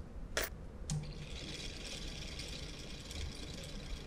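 A click, then another with a brief hum about a second in, after which a small homemade brushed series DC motor runs steadily with a faint high whir, lifting a load of eight screws in a bucket.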